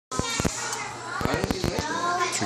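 Children's voices and chatter in a room, over a run of sharp knocks and clicks.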